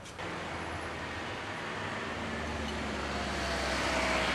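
Street traffic noise: a motor vehicle's engine running and growing gradually louder as it draws closer.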